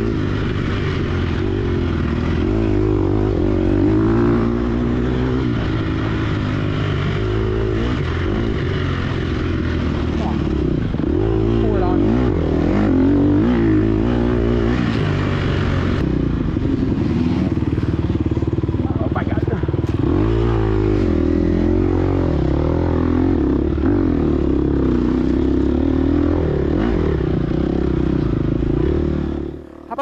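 Gas Gas EX250F four-stroke single-cylinder dirt bike engine, heard up close from the moving bike, ridden hard with the revs rising and falling through throttle and gear changes. The engine sound drops out abruptly just before the end.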